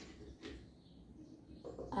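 Quiet room tone with a single faint click about half a second in.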